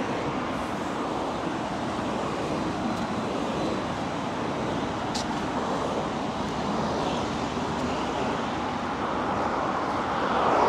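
Steady traffic noise from cars on a city street, an even wash of sound with no single vehicle standing out.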